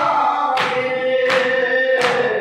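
Men chanting a noha lament in unison with long held notes, over open-hand chest-beating (matam) that lands in a steady rhythm, about one slap every 0.7 seconds.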